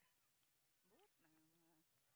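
Near silence, with only a very faint, short pitched call about a second in.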